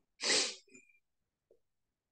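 A single short sneeze from the man, a sudden burst about a quarter second in, followed by a faint breath.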